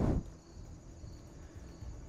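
A brief low rumble at the very start, then faint steady outdoor background noise.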